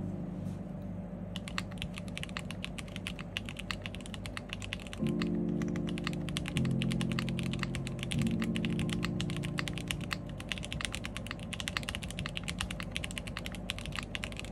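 Typing on an IRON165 R2 custom mechanical keyboard with WS Red linear switches in a polycarbonate plate, gasket-mounted, with GMK keycaps. Fast, steady keystrokes begin about a second in. Soft background music with sustained chords plays underneath, the chords changing a few times.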